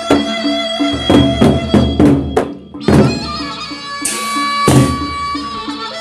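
Gendang beleq ensemble playing: the large Sasak barrel drums and percussion keep a regular pulse of about three beats a second under a held melody line. A run of loud accented strokes quickens from about a second in, breaks off briefly, lands on a heavy stroke near three seconds, and bright crashes follow around four and five seconds in.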